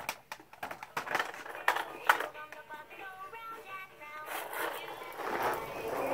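Plastic toy bus clicking and rattling as it is handled and rolled across concrete, with a run of sharp knocks in the first two seconds.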